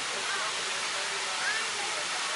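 Steady rush of running water at a sea lion pool, with faint distant voices.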